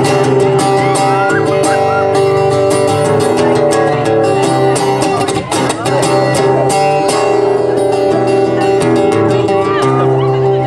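Amplified acoustic guitar strummed steadily in a slow instrumental passage, chords ringing between strums, with a brief drop in loudness about five and a half seconds in.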